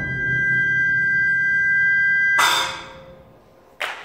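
Concert band holding a soft, sustained note, steady high tones over a low one. About two and a half seconds in the note stops with a brief noisy burst that fades away, and a short sharp noise comes near the end.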